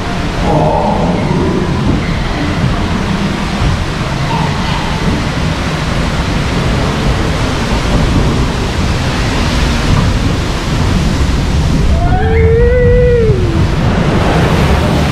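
Log flume ride: the log boat moving through its water channel with a loud, steady rush of churning water and splashing. A brief voice-like call rises and falls near the end.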